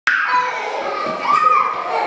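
Small children's high-pitched voices calling out as they play, with a rising-and-falling call about a second and a half in, in a bare, empty room.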